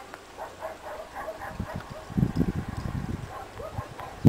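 Faint short calls repeating a few times a second, then from about a second and a half in low rumbling blows on the microphone, the loudest sound.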